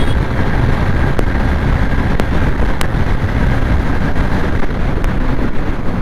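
Single-cylinder 125 cc motorcycle engine running flat out at top speed in fifth gear, heard from the rider's seat. Heavy wind rush on the microphone runs throughout, with a few faint clicks.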